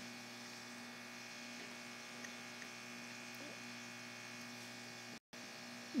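Faint steady electrical hum in the background of the recording, with a momentary dropout about five seconds in.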